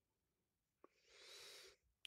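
Near silence, with a faint mouth click a little under a second in, followed by a soft intake of breath lasting under a second.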